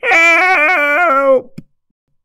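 A dog-like howl lasting about a second and a half, its pitch wobbling and stepping down in stages before it cuts off.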